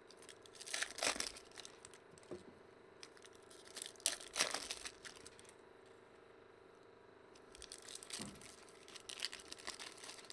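Foil trading-card pack wrappers being torn open and crinkled by hand, in short bursts about a second in, around four seconds, and again near the end.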